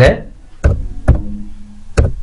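Laptop keyboard keys pressed one at a time while a Wi-Fi password is typed in: four sharp clicks about half a second apart.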